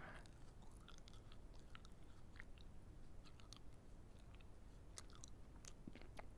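Faint chewing of a last bit of apple, heard as soft scattered mouth clicks close to an earphone's inline microphone, barely above near silence.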